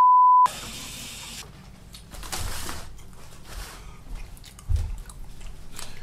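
An edited-in censor bleep, a pure tone of just under a second that blanks out a word right at the start. After it come quieter room sounds with a couple of low thumps.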